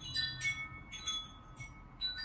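Background music of bright, bell-like chime notes, a few struck about every half second and ringing on.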